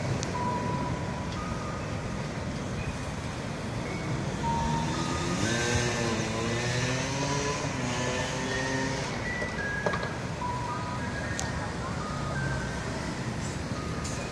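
Steady street traffic and engine hum. Between about five and nine seconds a vehicle engine rises and falls in pitch. Short high chirps sound now and then.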